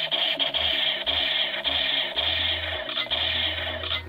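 Battery-powered toy rifle firing its electronic machine-gun sound effect, a harsh rapid buzzing rattle from its small speaker, with low thuds under it. The toy is running on its new 4 V rechargeable battery.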